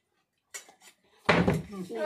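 A partly filled plastic bottle flipped onto a table: a light click, then a loud thud a little over a second in as it lands and topples onto its side.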